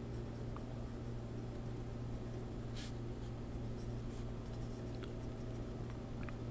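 Pencil writing on paper: faint, short scratching strokes over a steady low hum.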